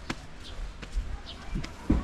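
Footsteps thudding on stone steps as someone climbs, a few heavy thumps about half a second apart, the loudest near the end.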